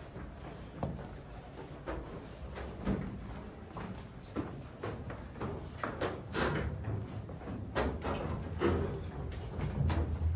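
Footsteps of several people going down a steep metal staircase in a narrow rock-cut tunnel: irregular knocks and clanks, about one or two a second.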